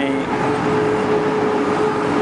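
Tanker truck's engine running as it drives slowly along the street, with a steady hum underneath.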